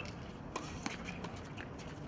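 Faint live tennis court sound during a doubles rally: a few sharp racket-on-ball hits and footsteps on the hard court, over a low open-air background.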